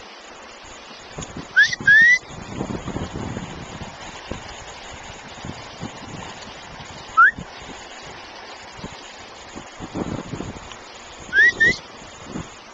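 A person whistling to call a dog: short, loud, upward-sliding whistles, two in quick succession, then a single one, then two more near the end.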